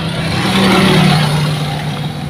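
A motor vehicle passing by: its engine noise swells to a peak about a second in and then fades, its hum dropping slightly in pitch as it goes past.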